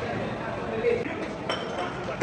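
Metal gym equipment clinking, with a sharp clink about one and a half seconds in that rings briefly, over voices talking in the gym.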